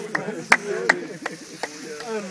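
Rhythmic hand clapping at an even beat, five claps roughly two and a half a second, keeping time with a group chant.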